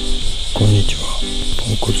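Steady high-pitched insect chirring, typical of summer crickets, running under a man's voice and soft background music.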